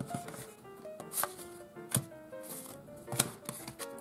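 Quiet background music, a simple stepping melody, with a few light taps and clicks of plastic-coated playing cards being picked up and handled on a table.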